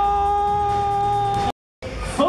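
A single loud, steady high tone with a stack of overtones, held at one pitch and cut off abruptly about one and a half seconds in.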